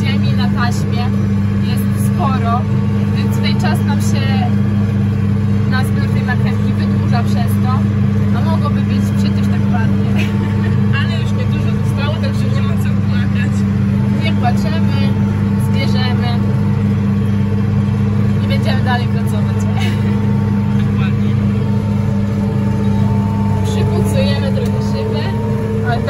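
Tractor engine running at a steady pitch, a constant low drone heard from inside the closed cab.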